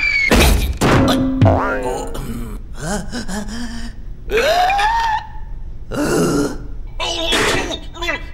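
Cartoon soundtrack: wordless character vocalizations, with grunts and exclamations that bend in pitch and one long rising cry about halfway through. Music plays underneath, and a few sharp knock-like sound effects come near the start and near the end.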